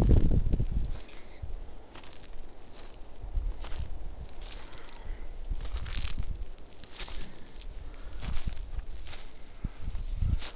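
Footsteps on dry leaf litter and pine needles, an irregular crunch about once a second, with rustling of dry vegetation.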